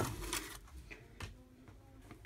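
A scratch-off lottery ticket being slid out from under a clipboard's metal spring clip: a brief papery rustle, then a couple of light clicks from the clip.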